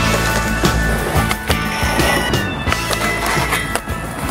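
Skateboard wheels rolling on concrete with sharp clacks of the board popping and landing, under a music track.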